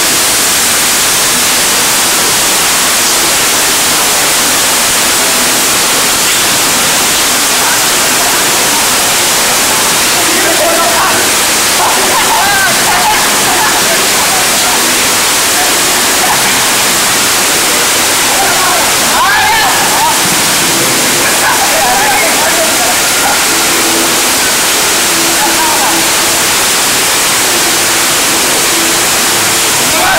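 Heavy rain falling in a loud, steady hiss, with voices shouting in the distance from about ten seconds in.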